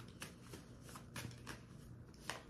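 Faint, irregular soft clicks and riffles of a deck of cards being shuffled in the hands.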